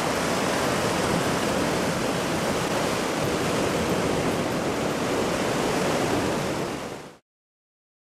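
Ocean surf washing steadily onto a rocky shore, fading quickly and cutting to silence about seven seconds in.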